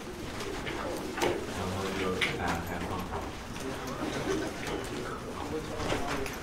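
Indistinct chatter of several people talking at a distance in a lecture room as a class breaks up, with a few scattered knocks and clicks.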